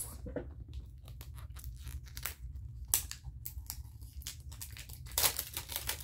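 Wrapping being torn off a small package in a series of short rips, with crinkling, a sharp rip about three seconds in and a longer tear near the end.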